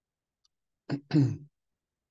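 A man clearing his throat: a brief two-part rasp about a second in.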